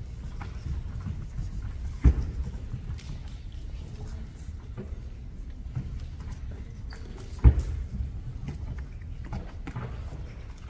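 Footsteps and knocks in a hall, over a steady low rumble, with two sharp loud thumps, the first about two seconds in and the second about three-quarters of the way through.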